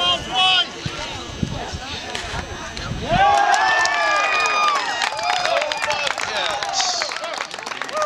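Soccer players and sideline spectators shouting; about three seconds in it swells into many voices cheering and yelling at once, with some clapping, as a goal is scored.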